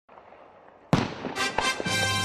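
Fireworks going off: a sudden loud bang about a second in, followed by a few crackling bursts. Music starts near the end.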